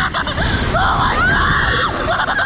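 A woman and a teenage boy screaming together as a Slingshot ride launches them upward: long, high screams with brief breaks for breath.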